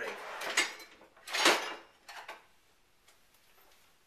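Kitchen utensils being rummaged and handled: rattling in the first second, one sharp clack about a second and a half in, then quiet.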